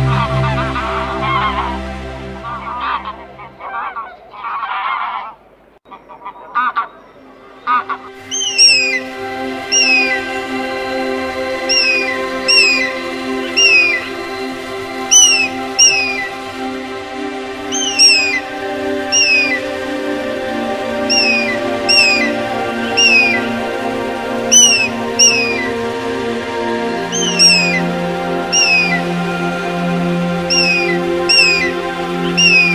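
Canada geese honking in irregular calls for the first several seconds. Then, over a steady sustained music drone, a bird gives short, high, falling calls, repeated about once a second, often in pairs.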